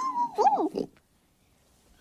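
A piglet squealing: one short, whiny call under a second long, its pitch wavering up and down.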